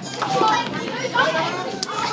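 Many children's voices chattering and shouting over one another, excited and overlapping.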